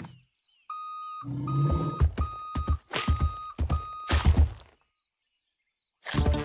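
Cartoon sound effects: a steady high beeping tone, then a run of heavy low thuds with the tone sounding in short repeated stretches over them. It all stops abruptly about a second before the end.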